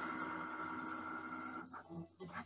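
Cricut Explore 3 cutting machine's carriage motor running with a steady whine as it moves the sensor head across the mat, scanning the printed registration marks before a print-then-cut job. The whine stops shortly before the end.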